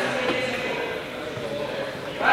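Several people talking at once in a sports hall, a general murmur of voices with no clear words.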